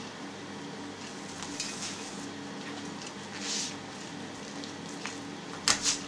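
Linen twine rustling and rubbing as it is pulled tight around a ham, then a sharp snap near the end as the twine breaks under the tension.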